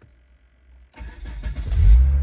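Renault Safrane's engine being started: quiet at first, then cranking and starting about a second in, growing louder.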